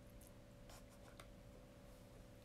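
Near silence: faint room tone with a steady low hum and a few faint small clicks.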